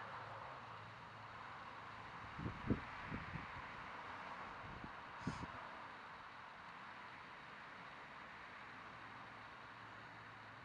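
Faint outdoor ambience: a steady hiss with a few short, low thumps about two and a half seconds in and again about five seconds in.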